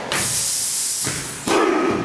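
Group of male haka performers giving a loud, forceful hissing breath for about a second, then a short gruff shout about a second and a half in.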